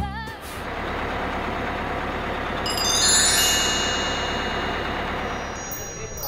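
A steady whooshing noise that swells about halfway through, with sparkling, chime-like high tones shimmering in from about three seconds in: a magical transition sound effect.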